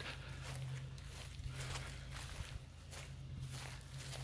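Faint footsteps over grass and dry leaves, a regular series of soft steps, over a steady low hum.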